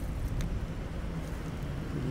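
Steady low rumble of outdoor background noise, with a faint click about half a second in.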